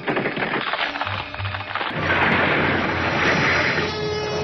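Dramatic cartoon sound effect: a dense, noisy rumble that starts suddenly and grows fuller about halfway through, over music.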